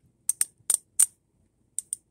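Worn 90% silver US half dollars clinking against each other in the hand as a stack is split and shifted: several light, sharp clicks in the first second and two more near the end.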